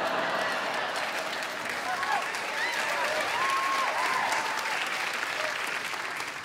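Audience applauding and laughing after a punchline, the applause swelling at once and tapering off near the end.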